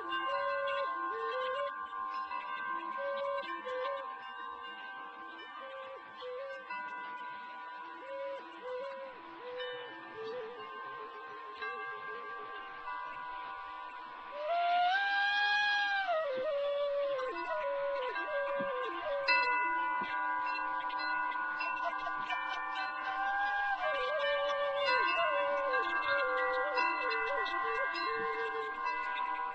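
Native American (Navajo-style) flute playing a slow, bending melody over steadily ringing wind chimes. About halfway through the flute rises to a louder, long held high note.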